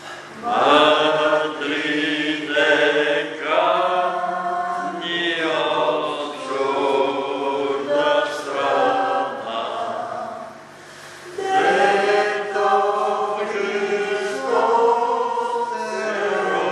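A congregation singing a hymn together in long held phrases, with a short break between lines about ten seconds in.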